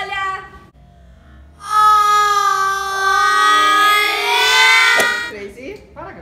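A long held musical note, about three and a half seconds, starting about two seconds in, its pitch dipping a little and rising again; a short click sounds as it ends.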